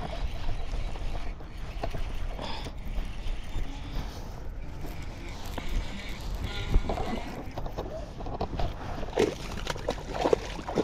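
Wind rumbling on the microphone and water sloshing against a kayak while a hooked bass is fought on rod and reel. Near the end the fish splashes at the surface beside the kayak.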